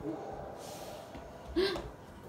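A toddler's short excited vocal sounds: a breathy gasp, then a brief loud cry about one and a half seconds in.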